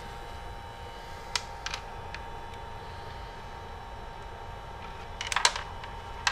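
Light clicks and taps from handling the centrifuge kit's plastic tubing and fittings: a few single ticks about a second and a half in, then a short cluster of clicks a little after five seconds, over a steady faint hum.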